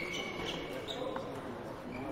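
Table tennis hall ambience: a murmur of voices echoing in the hall, with a few short high squeaks and a sharp click of a table tennis ball about a second in.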